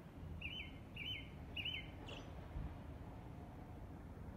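A small bird giving three short, identical chirps about half a second apart, over steady low outdoor background noise.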